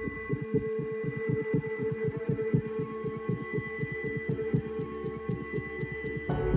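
Electronic film soundtrack: a steady hum of held tones over a rapid low throbbing pulse, with a faint ticking at about four to five ticks a second.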